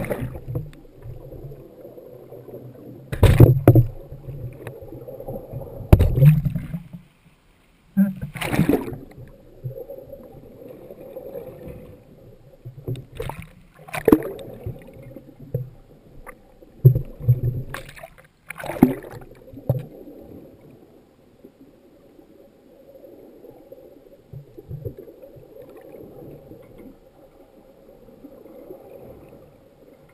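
Muffled water sloshing and bubbling, heard through an action camera's waterproof housing, broken by about eight loud thumps and splashes in the first twenty seconds. After that it settles into a steadier, quieter wash.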